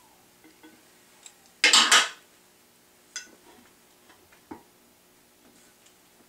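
Metal hand tools and bolts clinking against the drill press's metal base during assembly, with one loud metallic clatter lasting about half a second, a second and a half in, followed by a few lighter clicks.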